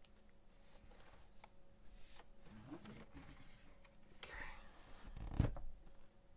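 Plastic case of a Huion Kamvas 22 Plus pen display being handled and turned over on a desk: faint clicks and rustles, then a low thump near the end as it is set down.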